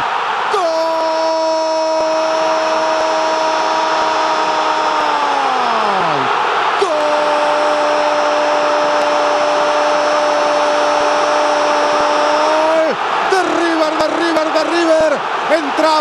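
Male Argentine football commentator's drawn-out goal cry, a single shouted 'gol' vowel held on one pitch for about six seconds and dropping away at the end, given twice in a row over crowd noise. Shorter excited shouting follows near the end.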